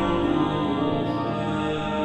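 Pipe organ playing slow, sustained chords of a psalm tune, with the harmony changing at the start and again near the end.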